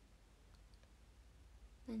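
Near silence: room tone with a few faint clicks about half a second to a second in, then a woman's voice starting just before the end.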